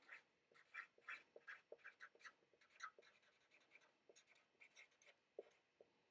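Faint squeaks and scratches of a marker pen writing on a whiteboard: a quick run of short strokes, thinning out in the second half.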